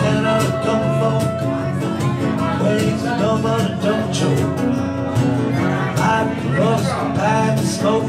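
Acoustic guitar strummed in a steady rhythm during an instrumental passage of a song.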